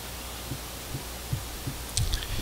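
Steady low hum with a few soft, low thumps.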